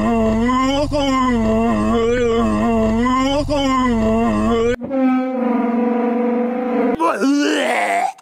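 A man's long, drawn-out wail, a mock lament that swells and wavers in pitch, over a low rumble inside the car. About five seconds in it cuts abruptly to a different, steadier wailing voice that rises in pitch near the end.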